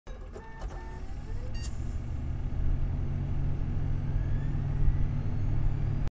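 Synthesised intro sound effects: a few short electronic beeps and blips in the first second or two, then a deep low rumble that swells louder and cuts off suddenly at the end.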